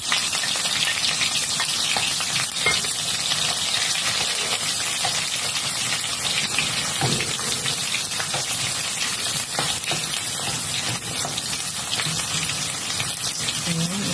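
Sliced onions and garlic sizzling in hot oil in a frying pan, a steady frying hiss, stirred with a wooden spatula that scrapes and knocks lightly against the pan.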